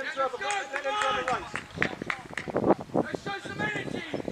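Distant shouting and calling voices across a football pitch, not clear enough to make out words, with a few sharp knocks in the middle of the stretch.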